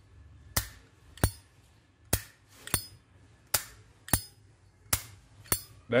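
Solid-brass Zippo lighter's hinged lid flipped open and snapped shut four times in a row, each cycle giving two sharp metallic clicks a little over half a second apart.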